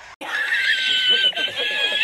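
A man laughing hard in a high-pitched, drawn-out wheeze, cutting in suddenly just after the start.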